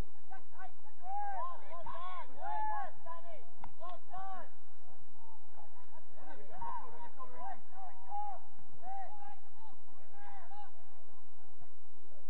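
Several voices calling and shouting from across a football pitch, indistinct and overlapping, as short calls throughout.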